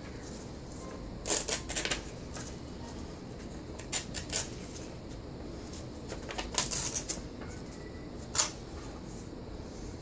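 A page from an old printed book torn by hand against a metal ruler, with paper rustling, in four short bursts; the last, near the end, is brief and sharp.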